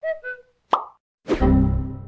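Cartoon animation sound effects: two short pitched blips and a sharp pop, then, about a second and a half in, a loud low computer error-alert chord that rings and fades as an error window pops up.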